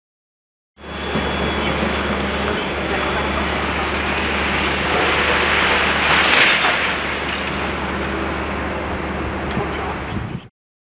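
Tracked excavator demolishing a concrete building: its diesel engine running steadily under the grinding and crunching of broken concrete and brick. A louder crash of falling rubble comes about six seconds in. The sound starts abruptly about a second in.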